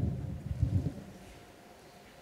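Handling noise from a microphone being passed along: a sharp thump at the start, then low rumbling bumps for about a second.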